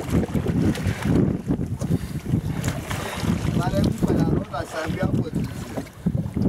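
Wind buffeting the microphone over open sea, with water moving around a small wooden boat; a few brief voices in the background in the middle.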